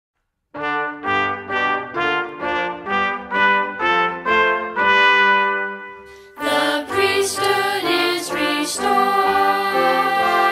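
Brass-led instrumental introduction to a church song. It starts after about half a second of silence with a run of short separate notes, about two a second, that lead into a long held note that fades. About six seconds in, a fuller, louder passage begins with percussion crashes.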